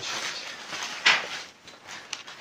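Hands rubbing together, making a soft rustling hiss with one short, sharper hiss about a second in.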